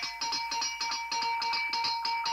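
A bell rung rapidly, the clapper striking about ten times a second over a steady, high ringing tone, as a town crier's call for attention.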